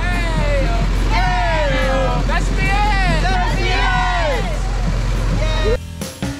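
High voices whooping and singing out in long gliding calls, several phrases in a row, over the steady low rumble of an idling vehicle engine. The sound cuts off abruptly just before the end.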